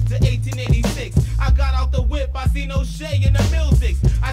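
Mid-1990s hip hop track: a rapper's vocal over a deep bassline that shifts between held notes, with a steady drum beat.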